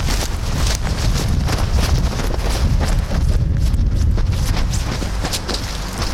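Wind buffeting the microphone in a steady low rumble, over hurried footsteps crunching through snow and dry brush.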